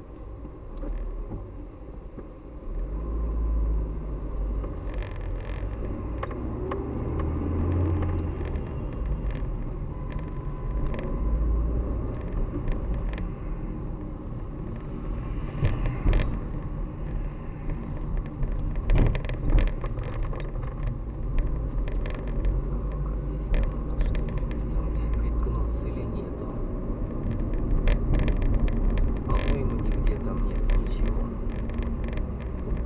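A car driving in city traffic, heard from inside its cabin: a steady low engine and road rumble that grows louder about three seconds in as the car gets moving. A few sharp knocks come partway through.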